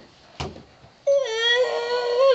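A sharp knock, then a young person's voice holding a long, high, steady-pitched wail for over a second.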